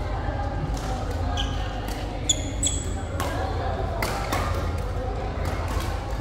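Badminton rally: sharp racket hits on the shuttlecock every second or so, with two brief squeaks of shoes on the court floor near the middle, over a steady low hum and voices in a large hall.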